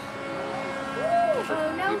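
Steady drone of a radio-controlled model airplane's motor flying some way off, with a short rising-and-falling voice about a second in.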